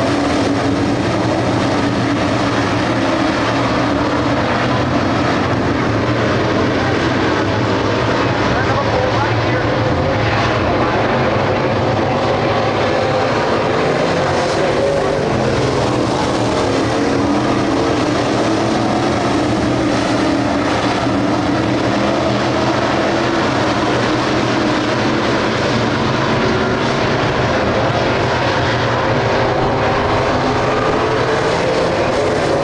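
A field of Crate Late Model dirt-track race cars, running GM 602 crate small-block V8 engines, racing at speed. Several engines rise and fall in pitch in overlapping waves, making a loud, unbroken din.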